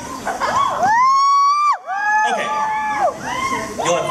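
Audience of young fans screaming: one long shrill scream about a second in that cuts off sharply, then several high screams overlapping over general crowd noise.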